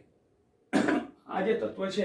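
A man coughs, clearing his throat, with a sudden sharp start about two-thirds of a second in, followed by a short stretch of his voice.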